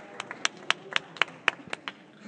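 Scattered audience clapping thinning out to a few separate, irregular claps as the applause dies down.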